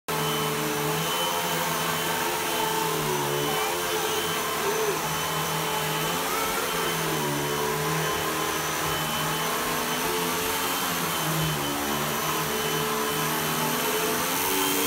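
Corded upright vacuum cleaner running steadily on carpet, its motor pitch dipping and rising again and again as it is pushed back and forth.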